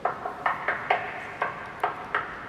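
Knuckles rapping on a plaster-painted concrete wall, about six sharp, irregularly spaced knocks, each with a short ring-out in the hall: a hand test of what the wall is made of.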